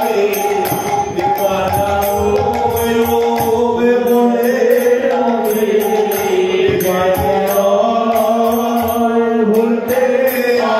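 Bengali devotional kirtan: male voices singing a slow, bending melody over a sustained harmonium, with small brass hand cymbals (kartal) striking in a steady beat.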